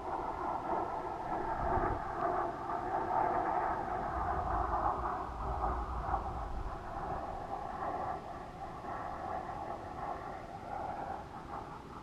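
Steady rushing air noise on the microphone of a weather-balloon payload camera in flight, with low rumbles about two seconds in and again for a few seconds in the middle.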